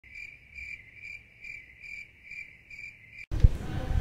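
A high, steady chirping tone that pulses about two and a half times a second, like chirping crickets. It cuts off suddenly a little over three seconds in, and a man's voice and a thump follow.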